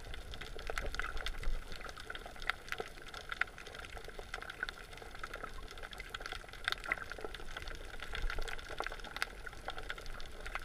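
Underwater sea ambience picked up through a GoPro's waterproof housing: a steady crackle of many small, irregular clicks over a low rumble of moving water.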